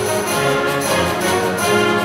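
Middle school concert band playing, with woodwinds and brass sounding held chords together.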